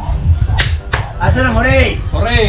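Two sharp smacks about a third of a second apart, then a man's raised voice, over loud party noise.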